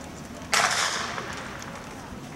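Starting pistol fired once to start a hurdles race: a single sharp crack about half a second in, with an echo trailing off over roughly half a second.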